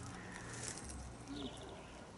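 Quiet background with faint bird calls, one about halfway through.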